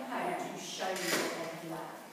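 A woman speaking, presenting to a room, with a brief sharp hiss or clatter about a second in.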